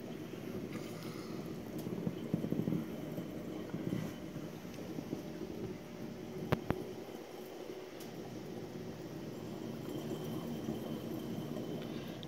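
Steady background hum and water noise of a running reef aquarium's pumps and circulation, with faint rustling and a single sharp click about six and a half seconds in.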